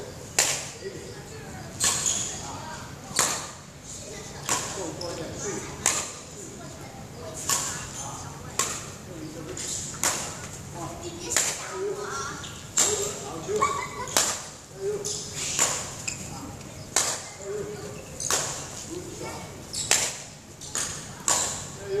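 Badminton rally: a shuttlecock struck back and forth with rackets, a sharp hit roughly once a second and louder from the near player.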